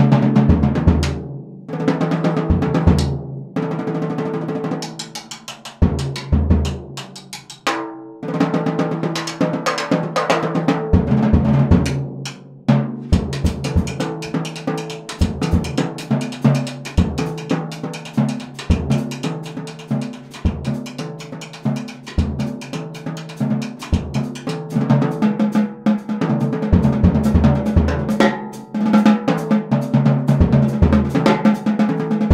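Early-1960s Slingerland drum kit (20-inch bass drum, 12- and 14-inch drums) with a Craviotto titanium snare, tuned high for bebop with little muffling, played with sticks in a busy jazz solo. Quick strokes run around the snare and toms, with scattered bass-drum hits.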